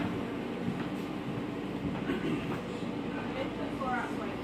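Steady low hum of room background noise, with faint voices in the background.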